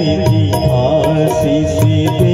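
A man singing a Gujarati wedding folk song (lagna geet) through a microphone in kaherva tala, over a steady held drone and a regular percussion beat.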